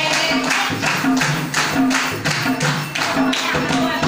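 A group singing a devotional Rama bhajan in unison, with hand claps keeping a steady beat about three times a second.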